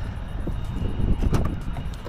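Wind buffeting the microphone: an uneven, gusting low rumble.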